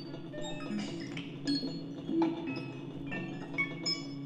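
Circuit-bent electronic instruments played live through amplifiers: a steady low drone under scattered short, high pitched blips and clicks.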